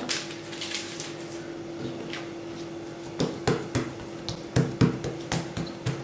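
Hands working soft yeast dough: quiet handling at first, then a few light taps and pats from about halfway in as a dough ball is pressed flat on a silicone pastry mat. A faint steady hum runs underneath.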